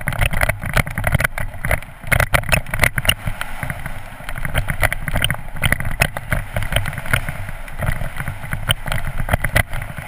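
Mountain bike running fast downhill over a loose gravel and dirt track: tyres crunching, the bike rattling, and frequent sharp knocks from stones and bumps, with wind rumbling on the helmet-mounted camera's microphone.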